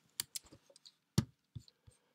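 A few scattered keystrokes on a computer keyboard, short separate clicks with one louder tap about a second in.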